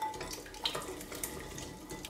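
Diced raw potatoes tipped from a glass bowl into a pot of broth, faintly splashing and plopping into the liquid.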